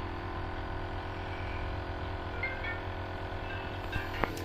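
Omron NE-C302 compressor nebulizer running: a steady electric-motor hum. There is a short click right at the start.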